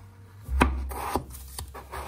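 A knife slicing through a raw peeled potato and striking the cutting board twice, about half a second apart, with a rasping sound between the strikes as the blade draws through the potato.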